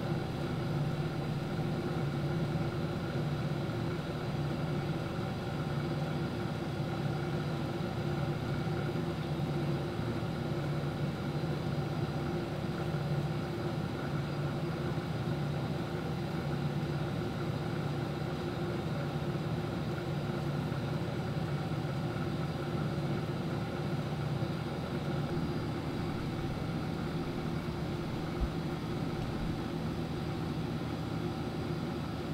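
A steady machine hum, a low drone with several steady higher tones, unchanging throughout.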